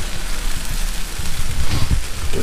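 Shredded cheese and buttered bread sizzling on a hot Blackstone flat-top griddle: a steady hiss over a low rumble.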